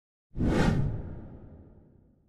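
A whoosh sound effect that starts suddenly about a third of a second in and fades away over the next second and a half.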